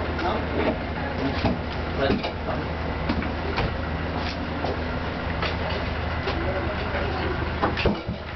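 Irregular knocks and bumps of a large speaker cabinet being manhandled down a narrow stairwell, over a steady low hum.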